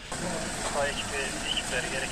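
Several people talking at a distance over steady street noise, with a vehicle engine running.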